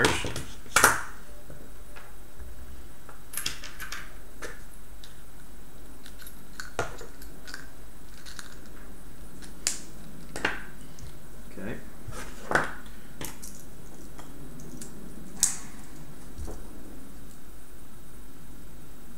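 Hand tools being picked up and handled on a wooden tabletop, wire strippers among them: scattered clicks and knocks over a steady room hiss. The loudest is a sharp double knock about a second in.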